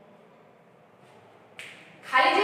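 Quiet room with faint scratching of a marker on a whiteboard, then one short, sharp click near the end.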